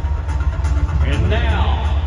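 A voice over a large arena's public-address system, echoing, heard briefly about a second and a half in over a steady heavy low rumble of arena background noise.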